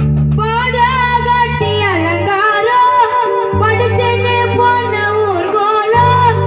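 A young male voice singing a Chennai gana song live, the melody bending and wavering, over sustained low accompaniment notes that change about every two seconds.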